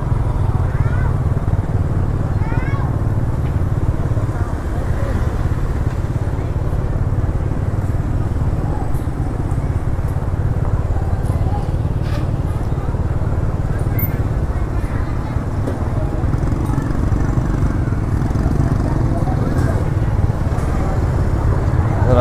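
Busy street-market bustle: motorbikes running through a narrow lane, with people's voices in the background over a steady low rumble.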